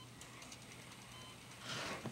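Quiet room tone with a faint low hum, then a short in-drawn breath, a gasp of surprise, near the end.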